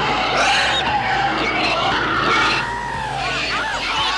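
Horror-film soundtrack: a loud, continuous screeching noise with wavering, gliding squeals, two short arching squeals near the end.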